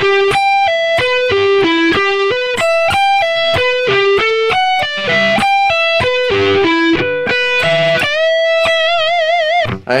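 Electric guitar (Charvel So Cal through a Yamaha THR10X amp) playing a fast string-skipping arpeggio lick, quick single notes stepping through chord shapes. About two seconds before the end it settles on a long held note, a full-step bend, that is shaken with wide vibrato.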